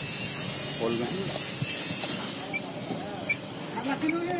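A steady hiss, with faint voices in the background and a few light clicks near the end.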